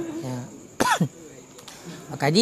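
A man's single short cough, about a second in, sudden and dropping quickly in pitch.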